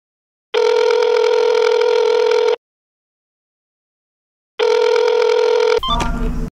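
Telephone ringing in a steady two-tone ring, about two seconds on and two seconds off: one full ring about half a second in, and a second one from about four and a half seconds that is cut short near the end as the call is answered.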